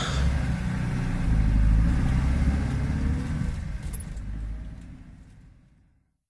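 Car engine running as the car pulls away, a low rumble that swells briefly, then fades out over the last two seconds.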